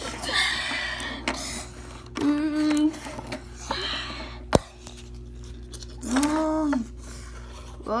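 A child's voice making wordless sound effects for toy figures: breathy hissing noises and short held tones, with one sharp click about halfway through.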